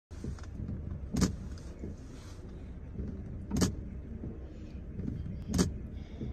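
Steady low rumble inside a car's cabin, broken by three short sharp knocks about two seconds apart.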